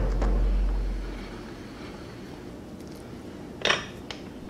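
Steel bottom bracket bearing press (Park Tool BBP-1) being handled as it is loosened from the bottom bracket shell: a low rumble fading over the first second, faint metallic ticks, and a short scrape near the end.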